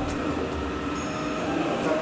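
Steady rumbling background noise with a voice faintly chanting underneath.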